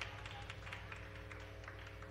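Low, steady electrical hum from the stage amplification, with scattered light clicks and taps on top.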